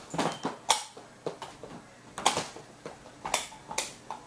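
Irregular sharp knocks and clicks, about one or two a second, from someone walking through a room with a handheld camera: footfalls and handling noise.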